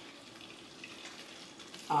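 Meat in a thick gravy cooking in a skillet with a faint, steady frying sound while a spatula stirs through it. A woman's voice starts right at the end.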